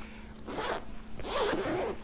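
Zipper of a small fabric toiletry bag being pulled open in two strokes, a short one about half a second in and a longer one about a second in.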